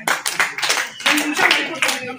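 A small group of people clapping in quick, uneven claps, with voices talking over it.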